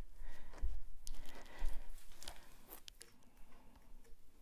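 Handling noise from a phone being set back in its holder: scattered light clicks, rubs and a few soft knocks picked up by the phone's own microphone, fewer toward the end.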